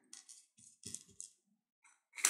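Near silence with a few faint, short scratches and taps of a thin paintbrush dabbing craft mousse onto paper.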